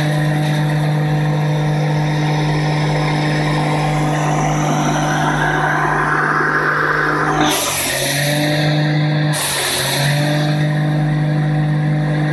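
Wood hammer mill running with a steady, loud hum. Twice in the second half its pitch sags briefly as a branch is fed in and ground up, with a rush of grinding noise from the wood being smashed to sawdust.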